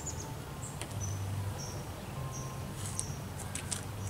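Outdoor ambience: a series of short high-pitched chirps, with a few sharp ticks late on, over a low steady hum.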